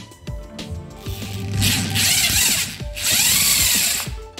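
Cordless drill running in two bursts, starting about a second in and again near three seconds, turning the threaded rod of a homemade rivet-pulling attachment fitted in its chuck.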